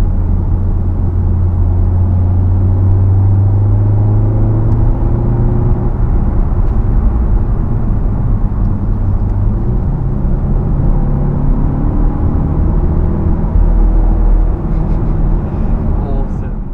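Volkswagen Golf R Mk7's turbocharged four-cylinder engine and road noise heard from inside the cabin while driving. The engine note drops about four or five seconds in, at a gear change, then climbs slowly through the second half.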